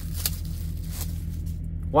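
Steady low background hum, with a faint click about a quarter second in and light rustling of the paper wrapping.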